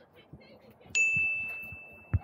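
A single notification-bell "ding" sound effect from a subscribe-button animation, struck about a second in: one clear high tone that rings on and fades slowly.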